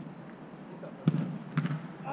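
A football being kicked during play on an artificial-turf pitch: two dull thuds about half a second apart, the first about a second in and the louder of the two.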